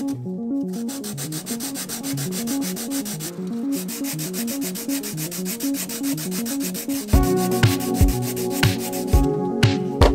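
Hand sanding with a sanding block, rubbing back and forth along the barrel of a prop gun. It sits under electronic background music with a steady beat and a stepping bass line; heavy kick-drum hits come in about seven seconds in.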